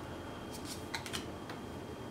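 Magic: The Gathering cards being slid off the front of a hand-held stack one at a time, giving a few light card flicks and clicks around the middle, over a faint steady room hiss.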